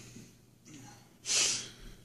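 A man's short, sharp breath drawn in through the nose during a pause in talking, with a fainter breath just before it.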